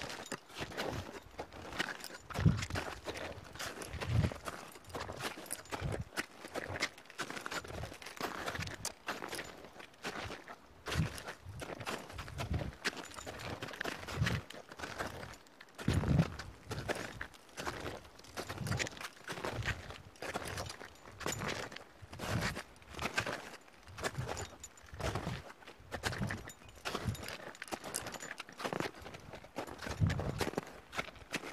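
Crampon-shod boots crunching into firm snow, step after step at an uneven pace, with a few heavier thumping footfalls.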